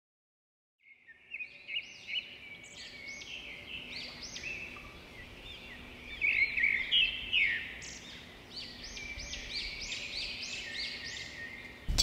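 Songbirds chirping, many short quick calls overlapping, starting about a second in after total silence and busiest in the middle, over a faint steady hum.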